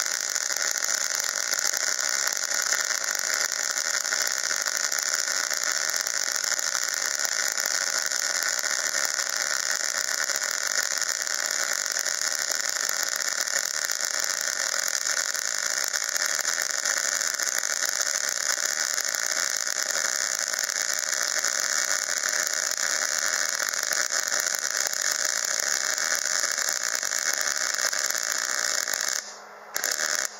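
Wire-feed (MIG) welding arc running a continuous weld bead, a steady hiss throughout. The arc cuts off about a second before the end, then strikes again for a brief moment.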